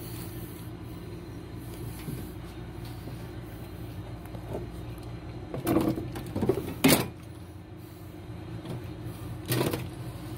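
A car battery being handled and set down in its battery tray: a few hard plastic-and-metal knocks and clunks about six to seven seconds in, the sharpest just before seven seconds, and one more near the end, over a steady low hum.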